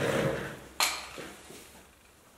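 MIG welding torch and its hose package being handled and set down: a rustle, then a sharp knock a little under a second in, followed by two faint taps.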